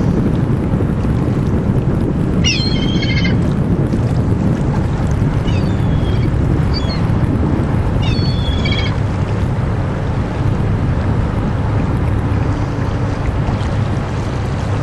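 Wind buffeting the microphone over a steady low rumble, with three short bursts of high bird calls about two and a half, six and eight seconds in.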